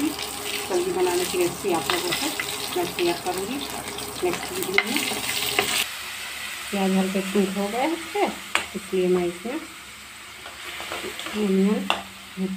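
Chopped onions sizzling in hot oil in an iron kadhai, with a metal spatula scraping and clacking against the pan as they are stirred. The sizzle is strongest in the first half and quieter after about halfway.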